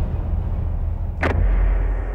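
Logo-animation sound effect: a deep, steady low rumble with one sharp hit about a second and a quarter in.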